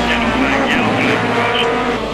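Rallycross race cars' engines revving hard as the cars race past, mixed in under a music soundtrack.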